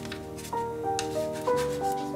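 Plastic spoon scraping against a nonstick frying pan while buns are turned, a couple of short strokes, over background music of notes falling in a pattern that repeats about once a second.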